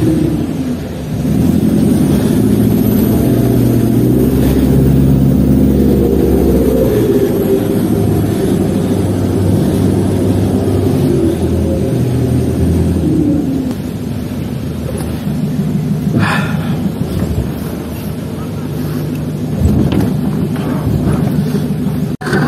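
4x4 pickup truck's engine running under load on a rough dirt track, its pitch rising and falling, with a few sharp knocks later on. Heard from the open truck bed.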